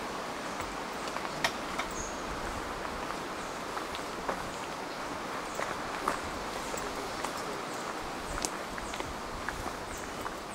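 Footsteps walking on a gravel trail: scattered, irregular crunches over a steady background hiss.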